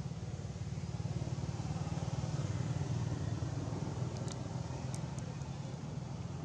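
A steady low motor drone, like a motor vehicle engine running nearby, growing louder towards the middle and easing off again, with a few faint clicks about four to five seconds in.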